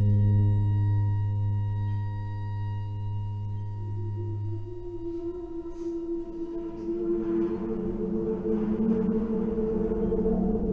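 A recorded excerpt of a new-music composition played back over speakers. A deep, steady tone with ringing overtones holds and then fades out about halfway through, while a rougher, grainy sustained sound in the middle range swells and grows louder toward the end.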